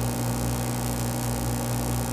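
A steady low electrical hum over a faint hiss.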